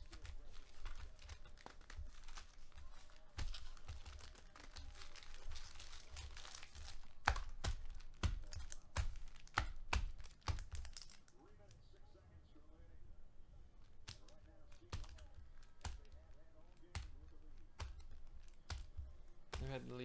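Foil wrappers of Panini Select basketball card packs crinkling as the packs are picked through and laid down, loudest over the first seven seconds, then a quick run of sharp clicks and taps. After that it goes quieter, with a faint voice in the background.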